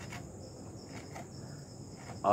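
Faint background insect trilling: two steady high-pitched tones that carry on without a break.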